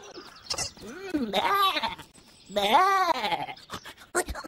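A cartoon lamb's voiced bleating: two wavering bleats, one about a second in and a longer, louder one about two and a half seconds in.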